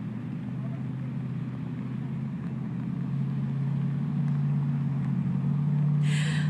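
Motorboat engine idling with a steady low hum, getting slightly louder toward the end.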